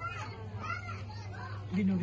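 High-pitched human voices in a room, about three short rising-and-falling calls, over a steady low hum.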